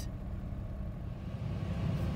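A steady low background rumble, with no other distinct sound.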